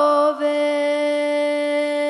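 A young woman's solo voice singing a folk song unaccompanied. It dips slightly in pitch, then settles about half a second in onto one long, steady held note.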